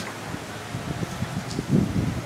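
Wind rumbling irregularly on the camera microphone outdoors, with a louder gust near the end.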